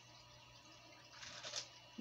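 Near silence with a faint steady low hum, and a soft rustle of a plastic bait bag being handled a little over a second in.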